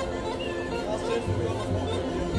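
Bulgarian folk music playing amid a crowd, with many people chattering over it.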